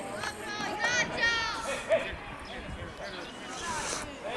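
Young players' high-pitched shouts and calls across a football pitch, with a sharp thud of the ball being kicked about two seconds in.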